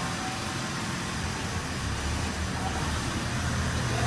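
A steady low mechanical hum with no distinct events.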